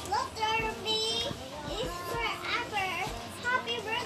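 A toddler talking to herself in short high-pitched phrases.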